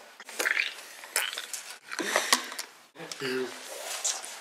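Quiet voices, with a few light clicks and taps in between.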